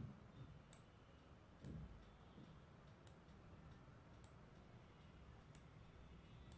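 Near silence with about five faint, sharp clicks spaced a second or so apart.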